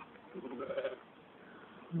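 Sheep bleating: a high, wavering bleat cuts off right at the start, followed by a short, fainter call about half a second in.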